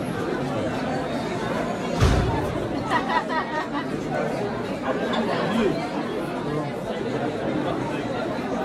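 Crowd chatter: many people talking at once in a busy room, with one clearer voice about three seconds in. A single low thump about two seconds in is the loudest sound.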